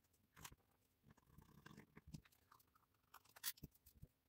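Very faint scratching and small clicks of a screwdriver tightening the grip retaining screw on a Colt Anaconda revolver's wooden grips, with a slightly louder tick about half a second in and another near the end.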